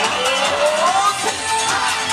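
Yosakoi dance music played through a street loudspeaker, with a steady beat and a tone sliding upward in the first second.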